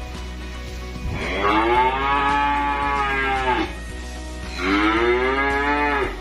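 A calf mooing twice: a long call of about two and a half seconds, then a shorter one a second later, each rising and then falling in pitch.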